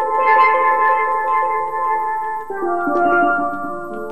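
Theme music played on steelpans: loud sustained rolled chords that change to a new chord about halfway through.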